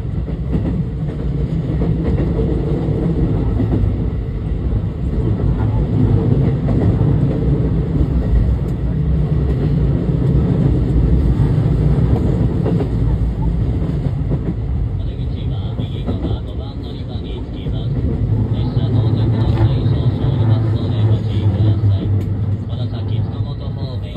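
Running noise inside a JR West 223 series 2000-subseries trailer car (SaHa 223-2096): a loud, steady rumble of wheels on rail as the train slows toward a station stop. A high whine joins about fifteen seconds in, and the rumble eases near the end.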